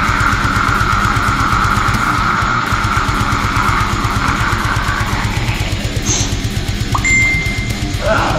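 Instrumental heavy metal passage: guitars over a fast, even drum beat, with a held high line that fades out about five seconds in.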